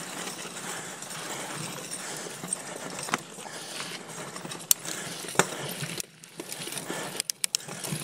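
2019 Giant Stance 2 mountain bike rolling over a loose, sandy dirt singletrack: a steady rush of tyre noise with a few sharp clicks and rattles from the bike, and a quick run of clicks near the end.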